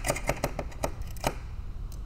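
Craft knife scraping leftover tip tape off a fencing foil's blade: a quick run of short, sharp scraping strokes that stops about a second and a half in.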